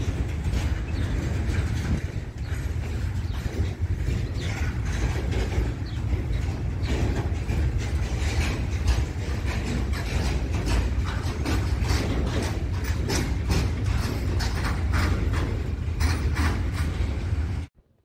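Freight train of covered wagons rolling past close by: a steady low rumble with rapid clicking and clattering of steel wheels on the rails. It cuts off suddenly near the end.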